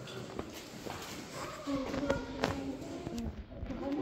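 Footsteps on a cave walkway: a handful of separate knocks while the person filming walks, with indistinct voices of other people in the background.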